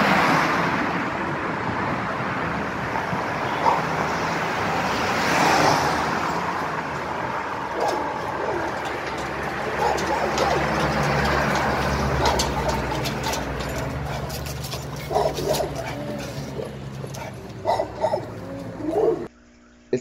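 Street ambience with steady traffic noise, and a dog barking a few short times near the end.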